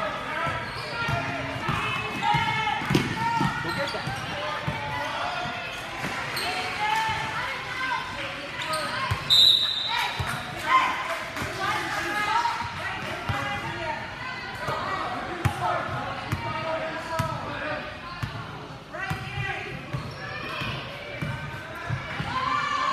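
Basketball dribbling on a hardwood gym court under a steady mix of voices from players, coaches and spectators calling out, echoing in a large gym. A brief, loud high-pitched tone sounds about nine seconds in.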